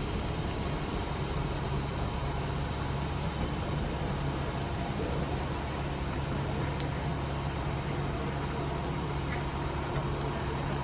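A steady low mechanical hum with an even hiss, unchanging throughout.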